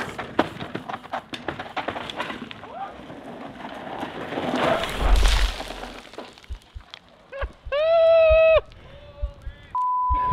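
Mountain bike rattling and crunching over dirt and roots, with quick clicks and knocks, then a heavy crash about five seconds in. A loud held shout follows, and near the end a steady censor bleep begins.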